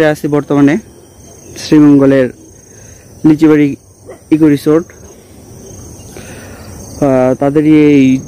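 A man speaking in short bursts, the loudest sound. Behind him, a steady high-pitched trill of insects runs without a break.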